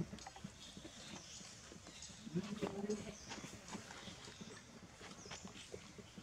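Quiet outdoor background with faint scattered clicks, broken by one short voice-like call about two and a half seconds in.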